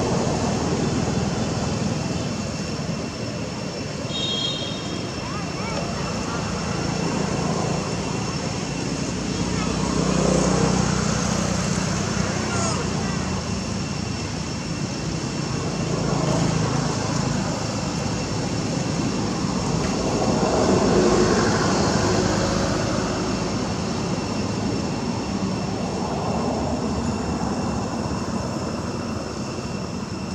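Outdoor background noise: a steady rushing that slowly swells and fades, with indistinct voices underneath.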